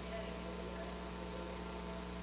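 Steady electrical mains hum, a low buzz with no other event standing out.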